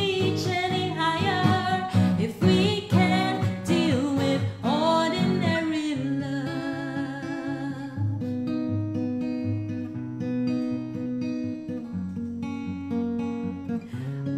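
Martin 000-MMV acoustic guitar played with a woman singing over it for about the first six seconds; after that the guitar carries on alone with single plucked notes and chords.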